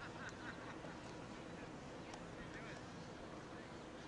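Faint outdoor field background with distant voices, broken by a few short calls near the start and again about two and a half seconds in.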